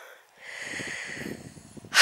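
A short drop to near silence, then a soft breath out of about a second and a half close to the microphone.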